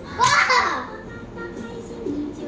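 A young child's brief loud shout, about a quarter of a second in, while jumping about. Cartoon music from a TV plays more quietly underneath.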